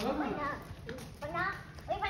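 Young children's voices: a few short, high-pitched babbling calls.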